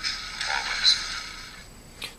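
Petit Crouton lightsaber sound board playing its custom boot sound through the hilt's mini 2 W rectangular speaker. It is a short, voice-like recorded clip, thin with no low end, fading out about a second and a half in.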